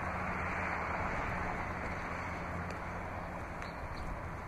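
Steady low hum under an even hiss, with no distinct sounds.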